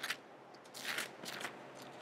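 Faint rustle of thin Bible pages being turned by hand while looking up a passage, a few brief papery swishes in the middle of the pause.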